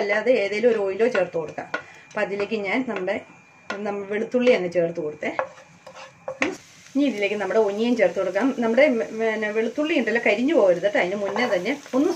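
Chopped garlic frying in hot oil in a nonstick pan and being stirred with a wooden spatula, under a person talking. From about six seconds in, a steady frying hiss comes up.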